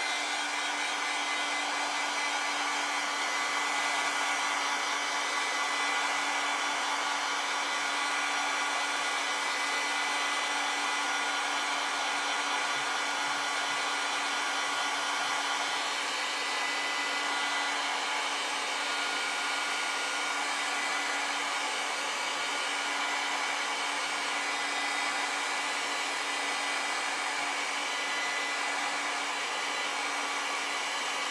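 Small handheld electric dryer blowing steadily, with a constant motor whine, as it dries wet watercolour paint on paper.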